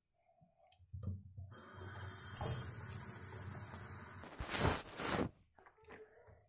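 Tap water running into a sink for a few seconds in a steady stream, with a few small knocks just before it. Near the end comes a brief, louder rush of water, and then it stops.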